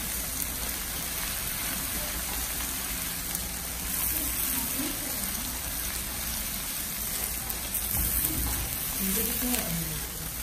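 Meat and sliced green onions sizzling on a hot tabletop griddle under a foil lining while tongs toss them, a steady crackling hiss.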